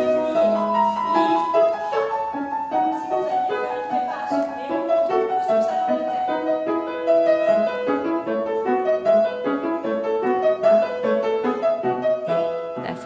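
Piano accompaniment for a ballet barre exercise: a flowing melody over chords, played without a break.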